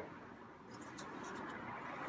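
Quiet background noise, a faint even hiss with a few faint ticks about a second in.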